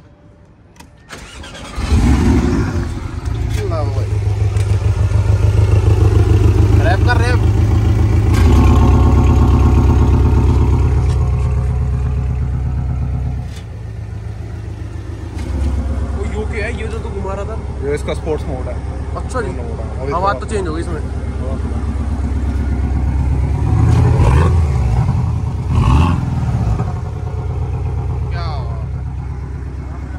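Porsche 718 Boxster's turbocharged flat-four engine starting about two seconds in, catching with a loud flare of revs. It runs at a raised idle, settles to a lower steady idle about halfway through, and gets two short blips of the throttle near the end.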